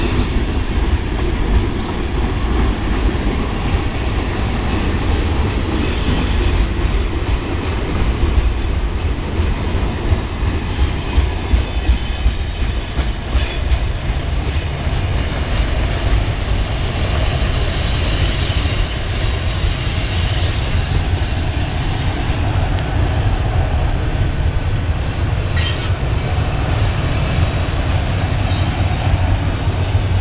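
Freight train's tank cars and autorack cars rolling past close by: a steady, loud rolling noise of steel wheels on the rails.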